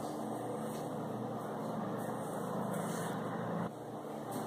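Steady background noise, a low hum and hiss with no speech, that drops slightly near the end.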